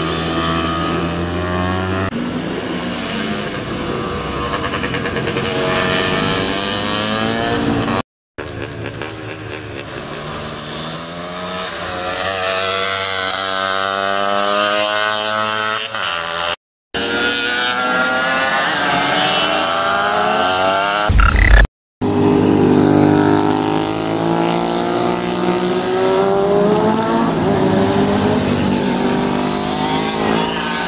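Racing motorcycle engines at speed as bikes pass one after another, their pitch rising and falling as they come and go through the corner. The sound cuts out briefly twice, and a loud short thump comes about 21 seconds in.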